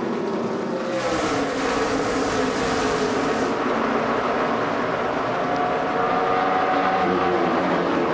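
A pack of NASCAR Sprint Cup stock cars racing at speed, their V8 engines making a layered drone whose pitch slides down and up as cars pass the trackside microphones. A rushing hiss joins about a second in and drops away after two or three seconds.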